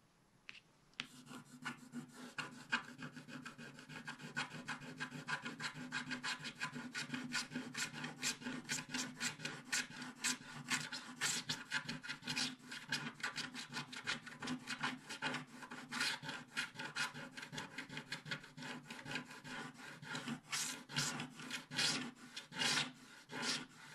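Wooden stylus scraping the black coating off a scratch-art card in rapid, short strokes, starting about a second in.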